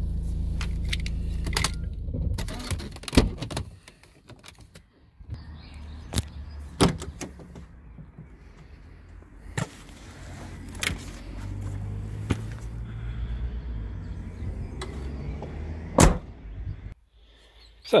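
Low steady rumble of a vehicle heard from inside the Mercedes cab, typical of an idling engine, broken by a few sharp clicks and knocks. The rumble drops away for a second or two about four seconds in, then returns.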